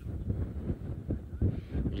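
Wind buffeting an outdoor microphone: an uneven, gusting low rumble that starts abruptly.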